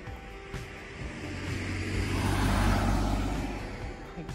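A road vehicle passing close by: its noise swells to a peak a little past the middle, then fades away.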